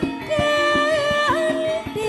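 A female Javanese singer (sindhen) holds a long sung note, dipping briefly about a second and a half in, over a gamelan ensemble whose struck metallophones keep up a steady run of notes.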